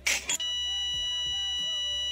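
A long, continuous electronic beep sound effect, held dead steady like a monitor flatline, starting about half a second in after a short whoosh, with faint background music underneath.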